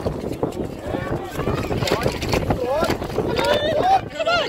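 Voices of players and spectators shouting across the pitch, with a few loud calls that slide up in pitch in the last second and a half, over wind rumbling on the phone's microphone.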